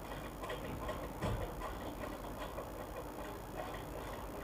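Faint, irregular light ticks and taps from a pen and metal ruler working against a gypsum board sheet, over low background noise.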